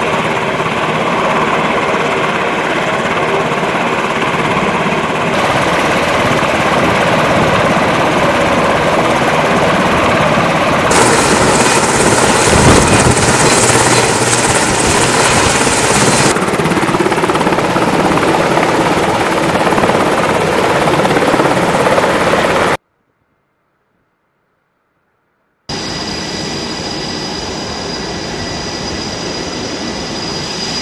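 MH-60 Seahawk helicopters running on an aircraft carrier's flight deck, turbine engines and rotors turning, in a loud, steady sound that shifts at several cuts. About two-thirds through, the sound drops out completely for about three seconds, then returns quieter as a steady sound with a thin high whine.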